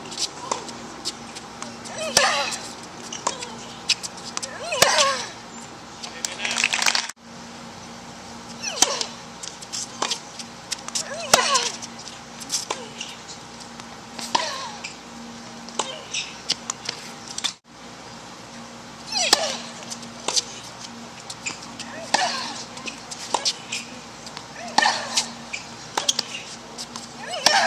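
Tennis rallies: sharp racket strikes on the ball every second or two, many of them paired with a player's short grunt. The sound breaks off abruptly twice between points.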